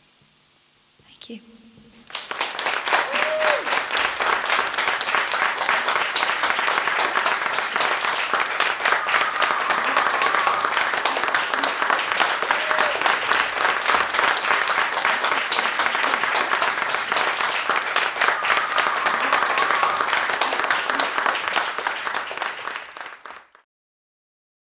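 Audience applauding after a song, with a few voices calling out over the clapping. It starts about two seconds in and cuts off suddenly just before the end.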